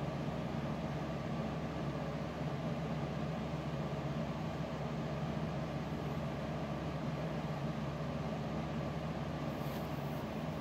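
A steady machine hum with a constant hiss, unchanging throughout.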